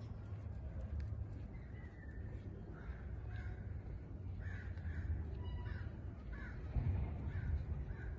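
A crow cawing, a quick run of short caws starting about three seconds in, over a low steady rumble.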